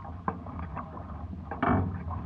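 Hobie 16 catamaran under sail in light wind: water sounds from the moving hulls, with scattered small clicks, knocks and creaks from the boat and its rigging, and a louder rush of water noise near the end.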